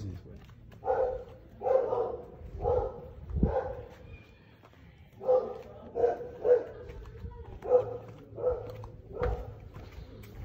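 A dog barking repeatedly, about ten barks, roughly one every three-quarters of a second, with a short break near the middle.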